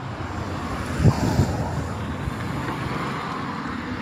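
Street traffic: a car driving along the road, a steady low road noise, with a brief louder low rumble about a second in.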